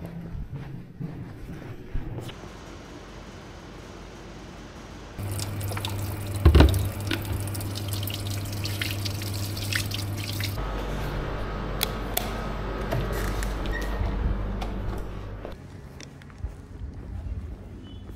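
Water from a laboratory sink tap running and splashing as hands are washed under it, over a low steady hum. One loud knock comes partway through.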